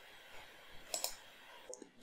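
A few faint computer mouse clicks, with a quick pair about halfway through, over quiet room tone.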